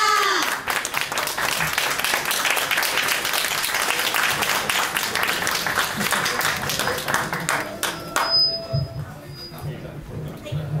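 Small audience applauding with steady rapid clapping that dies away about eight seconds in. A couple of brief thin high tones follow near the end.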